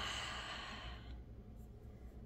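A woman's breathy sigh, about a second long, fading out, then only faint room tone.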